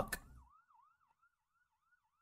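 A faint siren in a fast rising-and-falling yelp, sweeping about three to four times a second.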